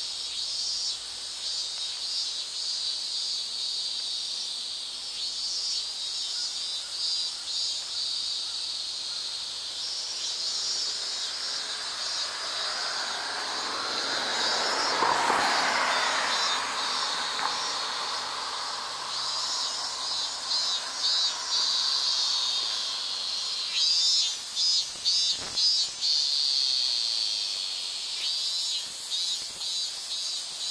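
Cicadas buzzing steadily in summer trees, a shrill drone with pulsing phrases that grow louder in the second half. A car passes on the road about halfway through, its noise swelling and fading over a few seconds, and there is a single sharp click a little before the end.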